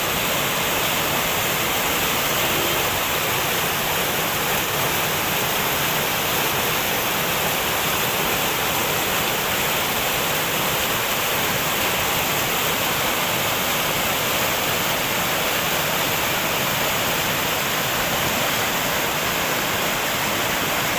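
Fast mountain river rushing over boulders: steady, unbroken white-water noise.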